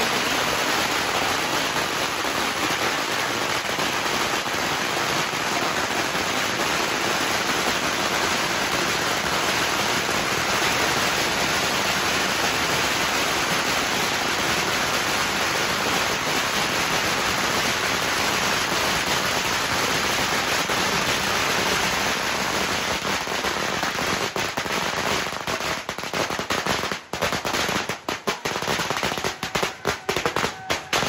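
Strings of firecrackers going off on the pavement in a dense, unbroken crackle of rapid bangs. About six seconds before the end the barrage thins out into scattered separate bangs.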